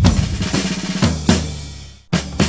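A drum kit beat in the music track: a hit at the start, then two quick hits just past a second in, dying away toward the end.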